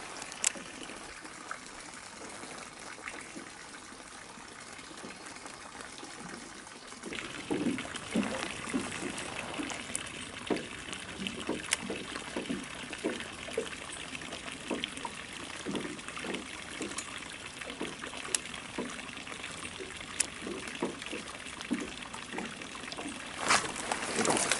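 Water trickling and dripping with many small irregular plops over a steady hiss; the plops start suddenly about seven seconds in and keep coming for the rest of the time.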